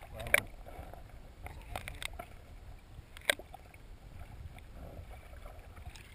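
Muffled water sloshing around a submerged camera, a low murky rumble with a few sharp clicks and knocks against the camera, the loudest about three seconds in.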